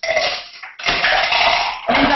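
Small hard trinkets clattering and rattling loudly together close to the microphone, in two long rattles with a short break about two-thirds of a second in.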